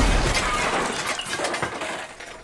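A sudden crash at the start, then a noisy tail that fades away over about two seconds: an animated film's impact-and-breakage sound effect.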